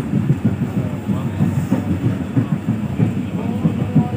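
Passenger train running at speed, heard from inside a carriage: a steady low rumble of the wheels on the rails with continuous rattling.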